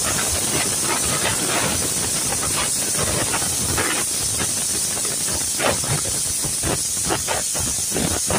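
Hands squishing and turning raw chicken pieces in a thick spice paste in a pot, giving a string of soft, irregular wet squelches over a steady hiss.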